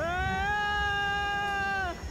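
One long drawn-out vocal note that rises at the start, holds steady for about a second and a half, then falls away.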